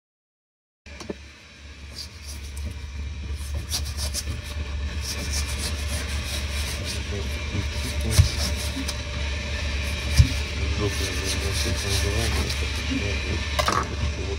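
Hands moving and turning slices of raw pork on a plate, over a steady low hum, with two sharp knocks about eight and ten seconds in.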